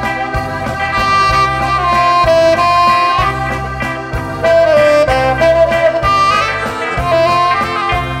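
Live wedding band playing an instrumental passage: a melody of long held notes over a steady bass and drum beat.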